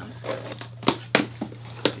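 Packaging being torn open and crinkled by hand, with three sharp snaps about a second in, just after, and near the end.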